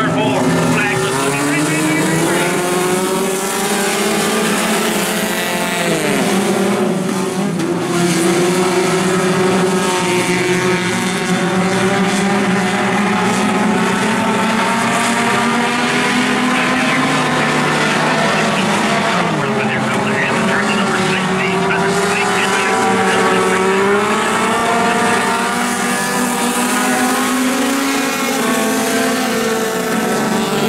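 A pack of four-cylinder dirt-track stock cars racing together, several engines running hard at once, their pitches overlapping and rising and falling continuously.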